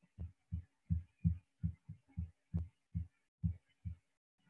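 A rapid run of short, low thumps, about three a second, over a faint steady hum.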